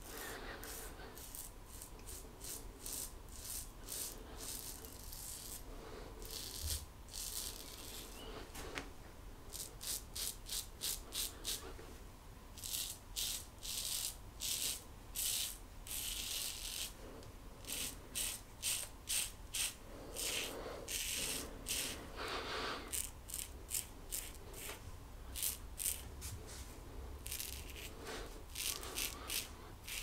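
GEM Flip Top G-Bar single-edge safety razor scraping through lathered stubble: short rasping strokes in quick runs of several a second, with short pauses between runs.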